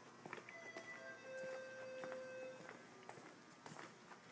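Footsteps on a hard tiled floor, about two steps a second. Faint music plays under them, with a few held notes in the first half.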